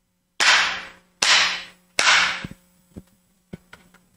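Bamboo jukbi clapper struck three times, evenly spaced, each sharp clack trailing off briefly in the room: the signal to enter meditation before a Korean Buddhist chanting service. A few faint knocks follow near the end.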